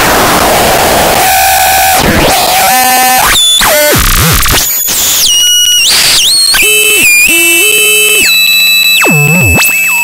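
Software modular synthesizer patch in VCV Rack, an Instruo Cš-L oscillator cross-modulated with a Mutable Instruments Plaits macro oscillator, making harsh synth noise. It starts as a dense hiss, then about a second in breaks into buzzy pitched tones that swoop up and down and jump between pitches as the oscillator's FM depth is turned up.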